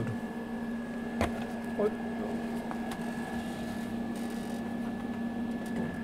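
A steady machine hum with a faint high whine over it, typical of welding equipment standing switched on, and a single sharp click about a second in.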